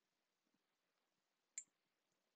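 Near silence, with one short click about one and a half seconds in.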